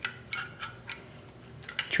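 Light metallic clicks as the barrel and its collar are turned and handled in the upper receiver of an LWRCI SMG-45. There are several spaced clicks, then a few close together near the end.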